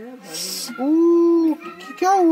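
A person's voice: a brief 'sh' hiss, then one long sing-song call that rises and falls in pitch.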